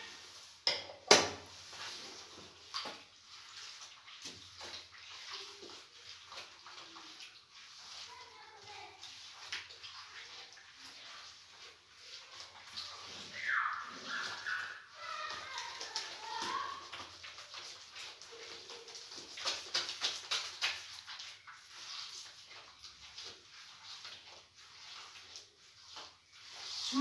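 A bare hand squishing and beating a soft butter, sugar, oil and egg mixture in a glazed clay bowl: irregular wet clicks and slaps. A single sharp knock about a second in.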